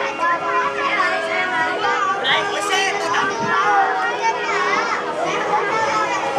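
Many children chattering at once, their overlapping voices running steadily throughout.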